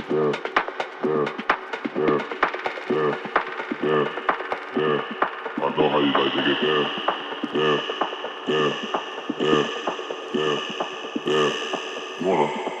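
Tech house DJ mix in a breakdown: the kick drum drops out and a pitched figure repeats about twice a second over light ticking percussion. A higher sustained synth layer comes in about halfway.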